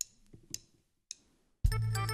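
A few faint clicks, then a live folk band with accordion strikes up suddenly about a second and a half in, with a heavy bass and a steady drum beat: the instrumental opening of the requested song.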